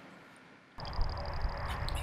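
Dead silence, then about three-quarters of a second in the outdoor sound of a polo match field comes up: a steady low rumble with a faint high whine above it.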